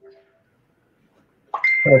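Near silence on a live call's audio: a short steady tone fades out at the start, the line goes dead for over a second, then a voice starts speaking about a second and a half in, with a thin steady high tone under its first words.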